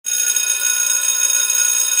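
Intro sound effect: a high, bright metallic ringing of several steady tones, starting abruptly and holding at one level.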